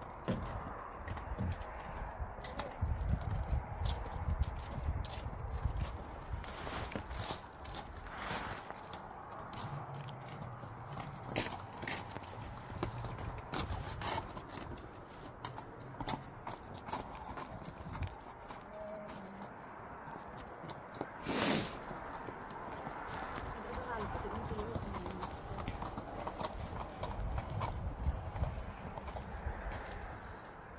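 A horse's hooves clopping in irregular steps on icy, packed-snow ground, with a loud, short rush of noise about two-thirds of the way in.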